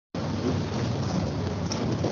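Loud, steady rushing noise coming through a video call's audio, cutting in abruptly just after the start.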